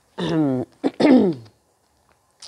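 A woman clearing her hoarse throat in two voiced bursts, the second falling in pitch. Her throat is still raspy after a flu that left her without a voice.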